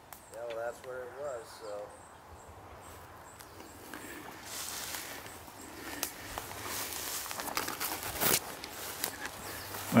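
Footsteps and rustling through dry grass and brush, starting about four seconds in and growing, with a few sharp cracks like twigs breaking. A faint voice is heard in the first two seconds.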